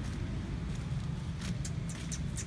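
Steady low background rumble, with a few faint short crackles in the second half.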